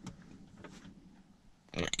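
Faint handling sounds from a plastic sun visor mount and its wiring being pushed into a car's headliner, with a couple of soft clicks. A man starts speaking near the end.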